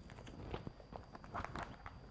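Newspaper pages rustling and crinkling faintly as a large broadsheet is handled and its pages turned, with small clusters of crackles about half a second in and again around a second and a half.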